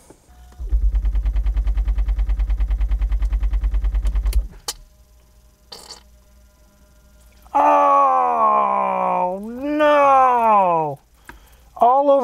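The hydraulic pump of a 1994 Mercedes SL600's top system runs for about four seconds with a fast-pulsing low hum, then stops with a click. The hard top will not release because the hydraulic cylinders are blown and leaking fluid. Later come two long groan-like sounds that fall in pitch.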